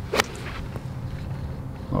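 A golf club striking the ball on a full tee shot: one sharp click just after the start, over a low steady hum.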